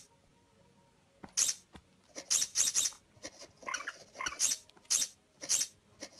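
Kittens' paws tapping and scratching at a tablet's glass screen: a quick string of short, sharp, high scratchy bursts, beginning about a second in and coming several times a second.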